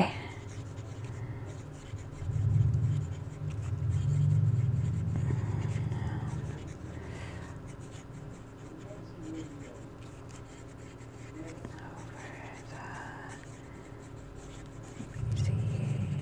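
Broad-nib fountain pen writing cursive on paper, the nib scratching faintly as it moves. A low rumble swells from about two seconds in and fades out about six seconds in.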